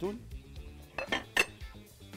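A metal utensil clinking and scraping on a hot grill pan, with a few sharp clinks in the second half. Faint background music runs underneath.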